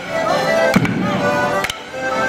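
Border Morris dancers clashing wooden sticks, sharp cracks near the start and near the end, over live squeezebox music and bass drum beats.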